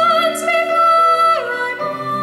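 Female solo voice singing a show tune into a microphone over instrumental accompaniment, holding one high note for over a second, then sliding down to a lower note near the end.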